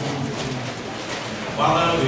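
Speech through microphones, with a louder voice coming in near the end.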